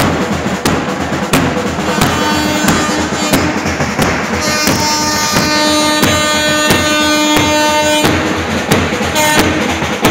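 Marching band's bass drums and side drums beating a steady rhythm, about one and a half strokes a second. From about two seconds in to about eight, long held notes sound over the drumming.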